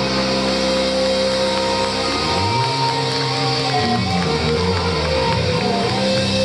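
Live rock band playing: sustained electric guitar and bass chords ringing with a high melodic line over them, without drum hits. About two seconds in, the low part starts moving through a short run of notes.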